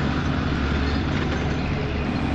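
Truck engines running in a steady low drone.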